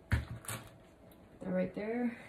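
A handheld torch set down on a table with a knock, followed by a lighter clunk about half a second later. A short hummed or murmured voice sound comes near the end.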